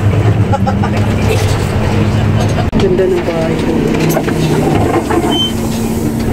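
Steady low hum of a bus engine heard from inside the cabin, with indistinct voices over it. The sound drops out for an instant about halfway through.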